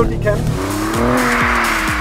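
Alfa Romeo Giulia Quadrifoglio's 2.9-litre twin-turbo V6 revving up and then easing off under hard driving, over a hiss of tyres on the wet track.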